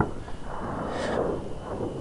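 A person breathing out hard in one long exhale during a stretching rep, over low wind rumble on the microphone.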